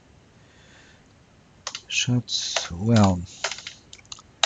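Typing on a computer keyboard: a short run of keystrokes starting about a second and a half in, as a few letters are typed.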